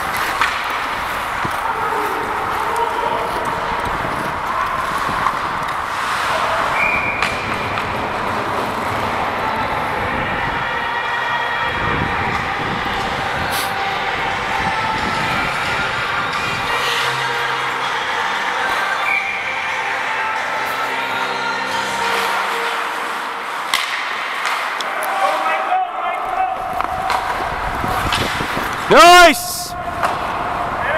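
Ice hockey game sounds in an arena: voices calling out over skates, sticks and puck on the ice. Near the end comes one loud, brief sound that slides up and then down in pitch.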